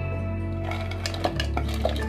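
Background music with a steady bass. From about half a second in, chunks of raw vegetables (cauliflower florets, beans, capsicum, potato) clatter and knock into a metal pressure cooker as the bowl is tipped in. There are several separate knocks.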